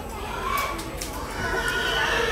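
Pigs squealing, one short high call about half a second in and a longer one near the end, over crowd chatter.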